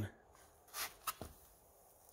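Soft rustle about a second in, followed by a faint click or two, as a small dog noses around in a narrow gap.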